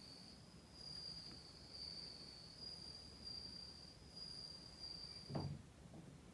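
A faint, steady high-pitched insect trill, broken by a few short gaps, that stops shortly before the end. Just as it stops there is a soft thump.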